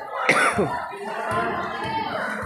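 Crowd of children talking and calling out, with one loud cry about a quarter second in that slides sharply down in pitch.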